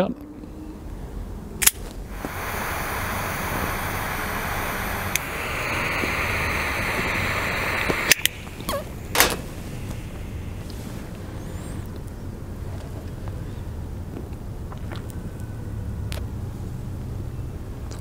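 A sharp click as the cigar is cut, then a butane torch lighter hissing steadily for about six seconds, louder partway through, as the cigar's foot is toasted and lit. Two more clicks follow, the lighter shutting off, and then only a low steady background.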